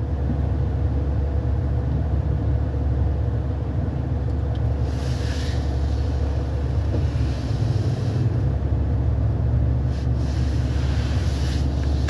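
Steady low rumble of a car on the move, heard from inside the cabin. It comes up at the start and holds even.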